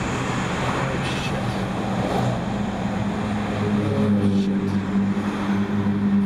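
Traffic noise heard from inside a moving car, with a steady low engine drone that grows stronger about halfway through as a city bus runs alongside.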